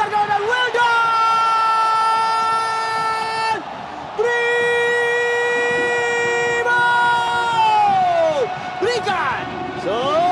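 TV football commentator's long drawn-out goal shout, "gooool", held on one steady pitch for about three seconds, a quick breath, held again, then falling away, over stadium crowd noise.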